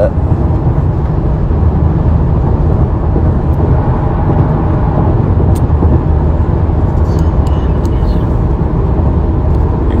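Steady low rumble of a moving car heard from inside the cabin, road and engine noise, with a few faint clicks scattered through it.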